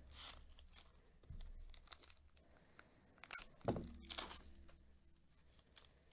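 Plastic wrapper of a Topps baseball card pack being torn open and crinkled, in a few quick rips and rustles, loudest about four seconds in, with soft thumps from handling.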